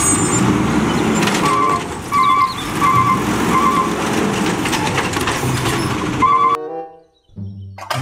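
Natural-gas-powered automated side-loader garbage truck running while its hydraulic arm grabs and lifts a wheeled bin, with a warning beeper sounding about every 0.7 s. It cuts off abruptly about six and a half seconds in, and children's music starts near the end.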